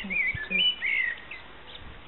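A small songbird singing a quick run of chirps and warbled notes for about the first second and a half, then stopping.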